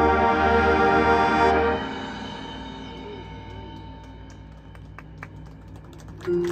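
Marching band with brass and front ensemble holding a loud sustained chord that cuts off sharply just under two seconds in, leaving a faint held tone fading away; the release of the show's closing chord.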